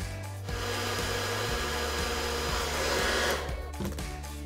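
Hair dryer blowing a steady rush of air, starting about half a second in and cutting off near the end, over background music.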